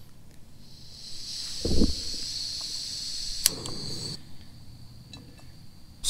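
Gas hissing from a small backpacking stove burner on a screw-on fuel canister as its valve is opened, with a knock near two seconds in. A sharp click comes about three and a half seconds in, after which the hiss drops away.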